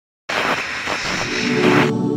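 Intro sting for a sports news segment: a loud rushing burst of noise starts a moment in and lasts about a second and a half, then a held chord begins near the end and rings on.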